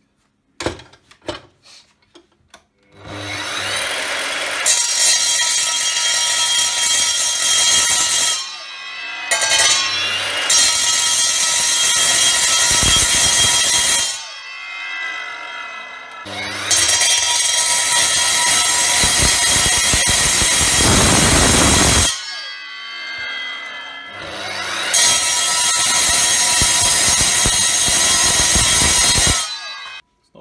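Evolution multi-material mitre saw running in four loud bursts, its blade cutting into a steel front wheel hub, with the motor whine dropping briefly between cuts. A few light handling knocks come just before the first cut.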